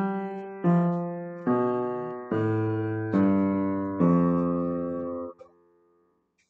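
Piano played note by note in a slow, even pulse, about one new note a second. The last note is held a little longer and then released near the end.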